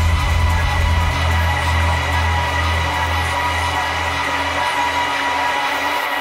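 Electronic dance music played by a DJ. The deep bass thins after about a second and has nearly faded out by near the end, leaving the upper layers of the track as the low end is cut in the mix.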